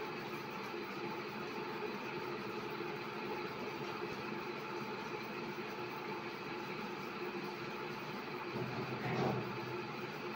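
Steady background hiss with a faint hum and no distinct event; a brief soft swell about nine seconds in.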